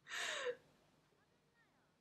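A woman's short breathy gasp of laughter behind her hand, about half a second long, at the very start.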